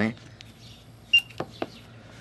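A few light metallic clicks from small nitro engine parts being handled and set down. The sharpest click comes about a second in, followed by two softer taps.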